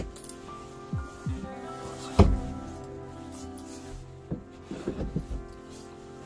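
Music with sustained notes plays throughout. About two seconds in, a single sharp knock sounds as a laminated tabletop is set onto its metal mounting bracket, with a few lighter knocks of handling near the end.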